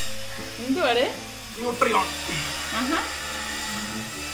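Steady hiss of background noise with three short voice sounds, about a second apart.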